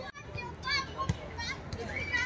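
Children playing, their high voices calling out briefly twice over a low background of other voices.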